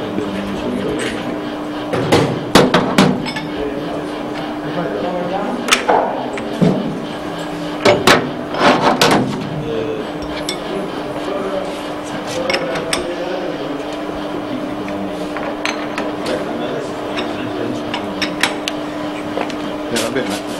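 Metal clanks and knocks from a metal lathe's quick-change tool post and toolholders being handled and clamped, in scattered clusters, over a steady hum.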